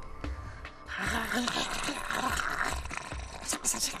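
A woman making a harsh, guttural, growling vocal sound, starting about a second in and breaking into several short hisses near the end. It is her imitation of the vibration she says she senses from reptilian beings.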